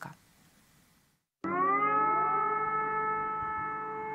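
An air-raid siren starting up about a second and a half in, its pitch rising into a steady wail.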